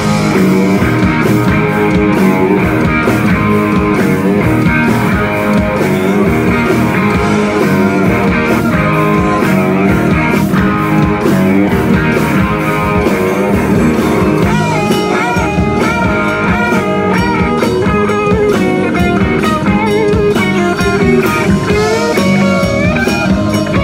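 Live rock band playing through a PA: electric guitars, bass and drum kit in a blues-rock groove. About two-thirds of the way in, a higher lead line with bent, wavering notes comes in over the band.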